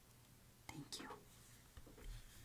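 Near silence, broken by a brief, faint snatch of a woman's voice, too soft to make out, a little under a second in.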